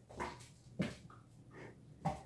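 Maine Coon kitten giving a few short, soft mews while playing, with a single knock about halfway.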